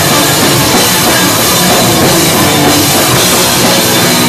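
Hardcore punk band playing live: electric guitar, bass guitar and drum kit together, loud and dense without a break.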